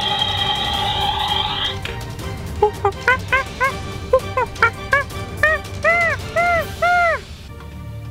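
Electronic sound effect from a Rescue Bots Heatwave toy for the first two seconds or so, set off by its chest button. Then a string of about a dozen short arched monkey-like screeches, each rising and falling, growing longer towards the end, over background music.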